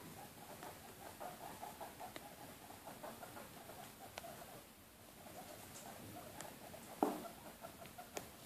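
A guinea pig making soft, rapid, repeated squeaky sounds that run for several seconds, pause, and start again. A single knock comes about seven seconds in.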